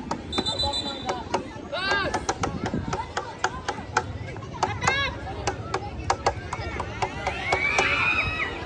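Outdoor youth football match: high-pitched shouts and calls from players and onlookers, with sharp knocks of the ball being kicked scattered throughout and a longer held shout near the end.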